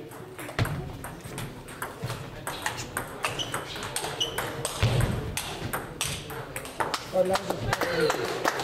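Table tennis rally: the ball clicking off the paddles and bouncing on the table in quick succession, with more ball clicks from neighbouring tables echoing in a large sports hall.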